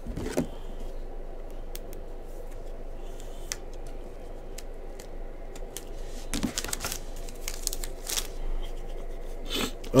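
Trading cards being handled on a table: faint scattered clicks and scrapes of card stock and plastic, getting busier in the second half.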